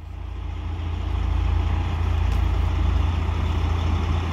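Diesel engines of heavy trucks idling, a steady low hum, growing louder over the first second or so.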